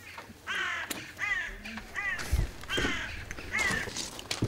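A crow cawing about five times in a row, harsh calls under a second apart. There is a low thud about two and a half seconds in.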